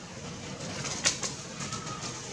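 A bird calling in the background over outdoor ambience, with a thin steady note near the end. There is one sharp click about a second in.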